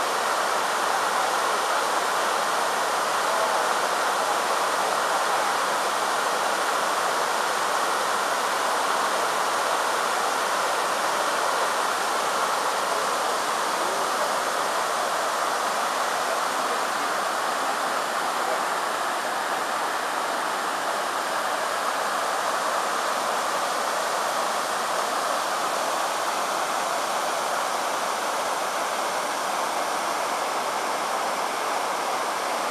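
Rushing water of a fast mountain stream tumbling over a small stepped weir and rocks: a steady, even rush.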